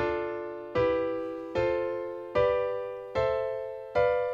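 Software piano playing the diatonic triads of C major in rising order as block chords. One chord is struck about every 0.8 seconds and left to decay: D minor, E minor, F major, G major and A minor, with the dissonant B diminished chord struck right at the end.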